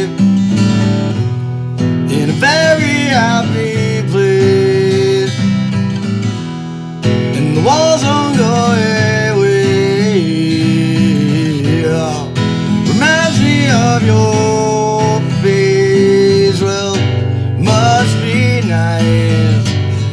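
Acoustic guitar strummed steadily, with a man's voice coming in over it in several short sung phrases.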